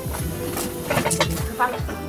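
Background music with a few light clinks of a utensil against a cooking pot as soup is stirred.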